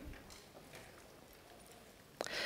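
Near silence: room tone in a lecture hall during a pause in speech, with a few faint ticks.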